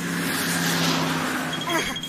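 City street traffic: road noise with a car's engine hum that swells in and then eases off. Near the end, short high squeaky cartoon vocal sounds with falling pitch come in.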